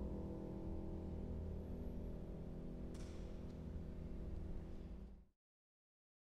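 A piano's final chord ringing and slowly dying away, with a faint click about three seconds in, then cut off abruptly into silence a little after five seconds in.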